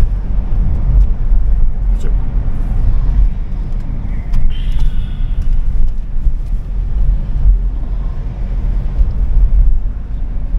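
Car cabin noise while driving: a steady low rumble of engine and tyres on the road, heard from inside the car.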